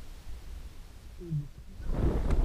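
Muffled low rumble of a mountain bike rolling along a dirt trail, heard through a faulty action-camera microphone, with one brief low voice-like sound a little past a second in. A louder rush of wind on the microphone comes in right at the end.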